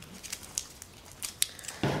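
A few light clicks and rustles as a bare-root orchid plant is handled and laid down on a table.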